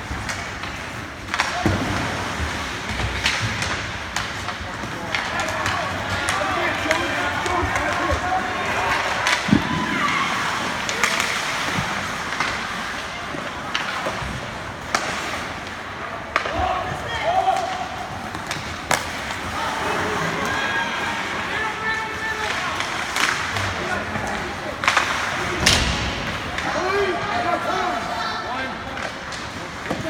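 Ice hockey play: sharp clacks and thuds of sticks, puck and bodies against the boards several times, over the scrape of skates, with spectators' voices and shouts throughout.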